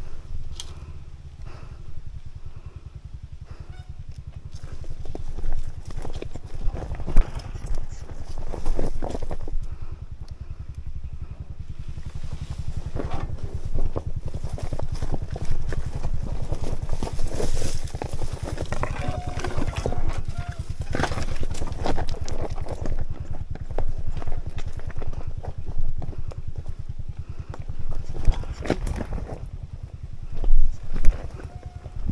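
Dirt bike engine running at low revs, a steady low pulsing throughout, while the tyres roll over loose rock: frequent irregular knocks and clatters from stones and the bike's suspension and body.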